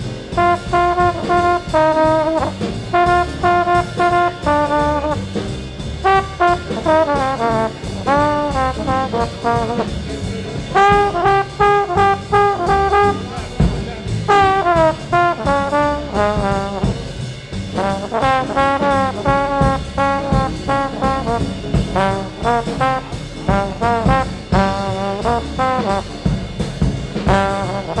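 Live small-group swing jazz: a single horn plays a solo line with bent and sliding notes over the bass and drums of the rhythm section.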